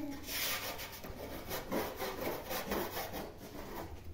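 Dry rubbing and scraping in a run of irregular strokes.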